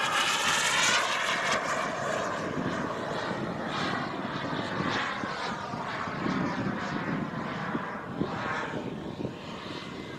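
Model jet's i-Jet Black Mamba 140 turbine engine running as the jet flies past overhead. Its tones bend downward in the first second or so, and the sound grows fainter toward the end.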